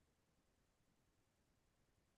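Near silence: faint steady background hiss on a video-call audio feed.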